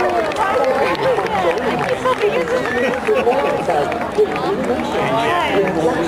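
Crowd of spectators chattering, many voices talking over one another at once.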